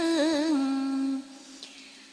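A voice chanting Vietnamese verse holds the last syllable of a line on a long, wavering, ornamented note, which stops a little over a second in and leaves a faint, quiet pause.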